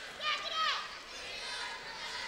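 High-pitched shouts of players and young fans in a school gym, the loudest a rising-and-falling call from about a quarter second to three quarters of a second in, over a general murmur of voices.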